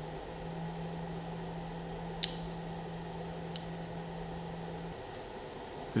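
Small neodymium magnetic balls of a Neocube snapping together with two sharp clicks, a louder one about two seconds in and a fainter one about a second later, as the last pieces are attached to the strip. A low steady hum runs underneath and stops near the end.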